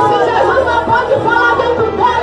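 A woman's voice speaking loudly and without pause through a microphone and PA, with other voices overlapping.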